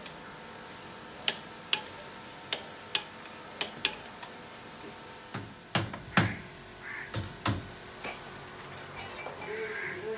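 Sharp metallic clicks in three pairs, about a second apart, from a hand tool working the copper refrigerant-line flare fittings of a split AC outdoor unit, followed by several duller knocks.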